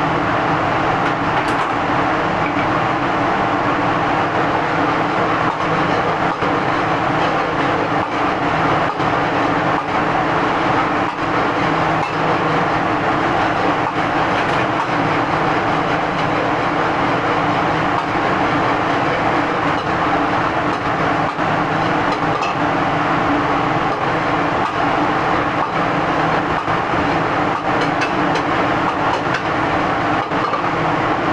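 Steady roar of a commercial kitchen's gas wok burner and ventilation, with a few low hum tones running through it and faint scattered clicks of a metal ladle in the wok.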